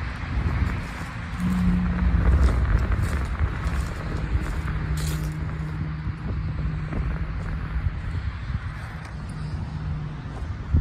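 Road traffic passing on a nearby highway: a low rumble with a steady engine hum through most of the clip and tyre hiss that swells and fades, with a few small clicks.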